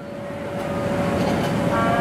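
Vehicle noise, a steady rushing that grows gradually louder, with a faint steady tone running through it.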